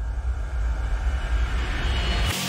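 Logo-animation sound effect: a deep rumble that swells and grows louder, with a hiss building over it.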